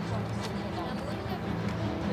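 Dramatic background score of held, sustained tones, with people's voices heard over it.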